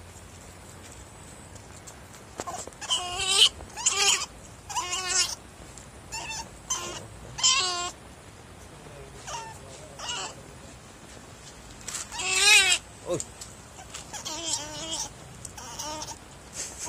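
Otter pup giving repeated high-pitched squealing calls with a wavering pitch, in bouts of up to about a second with short pauses between them. The loudest call comes about twelve seconds in.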